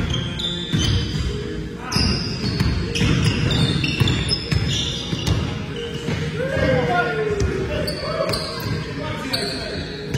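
Pickup basketball game on a hardwood gym floor: a basketball bouncing and sneakers squeaking in many short high chirps as players run and cut, with shouting voices, all echoing in a large gym hall.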